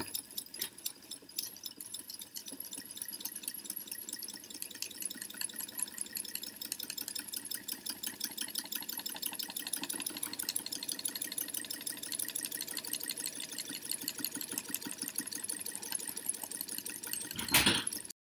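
Homemade 3D-printed brushed DC motor running on battery power, its armature spinning with a rapid, steady clicking from the commutator and brushes. A sharp click sounds at the very start, and a louder burst of noise comes just before the end.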